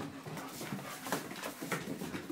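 Great Dane puppies play-fighting: a quick series of short, sharp dog sounds and scuffles, a few each second.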